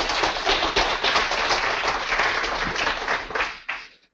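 Audience applauding, many people clapping at once, dying away near the end.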